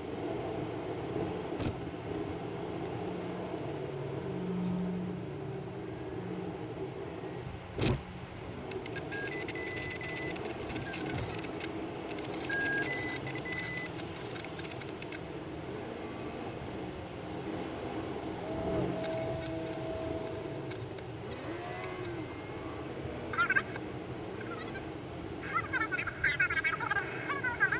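Steady road and engine noise from inside a moving car, played back sped up, with one sharp click about eight seconds in. Brief high-pitched, sped-up voices come in near the end.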